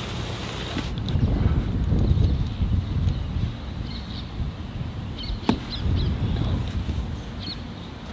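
A single sharp golf club strike on a ball in a sand bunker, about five and a half seconds in. Steady wind rumble on the microphone runs under it, with a few faint bird chirps.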